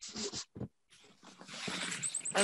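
A woman laughing softly in a few short bursts.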